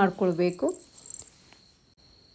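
A woman speaking briefly, then a spoon clicking and scraping lightly against a ceramic bowl as a salad is stirred, a few faint clicks about a second in, with a faint steady high-pitched whine underneath.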